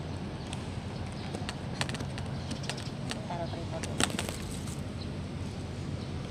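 Outdoor background with a steady low rumble, broken by a run of sharp clicks and taps through the middle, the loudest about four seconds in, and a brief snatch of a voice a little after three seconds.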